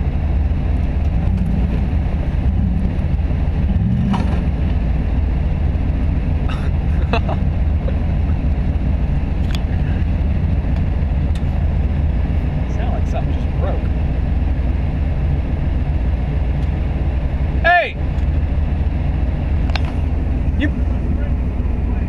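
Steady low rumble of an idling off-road vehicle engine, with a few faint knocks scattered through and a short vocal sound near the end.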